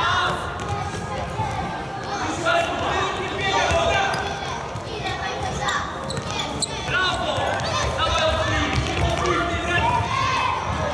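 A futsal ball thudding off players' feet and bouncing on a sports-hall floor, with children and spectators shouting and calling out, all echoing in the large hall.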